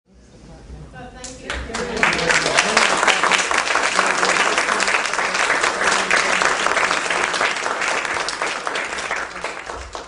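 Audience applauding, the clapping swelling over the first two seconds and then holding steady, with a few voices mixed in near the start.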